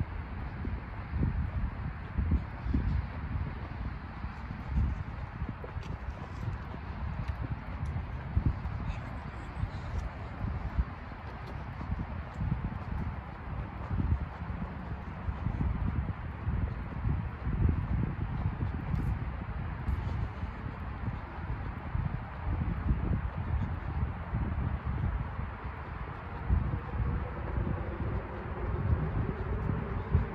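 Footsteps and low thuds of wind and handling on the microphone of a camera carried while walking on a sidewalk. Near the end a car engine zooms, its pitch rising as it speeds up.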